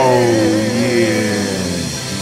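Live pop band ending a song: a singer holds a long final note with vibrato while the band's instruments slide down in pitch over about a second and a half above a low held bass note, then fade near the end.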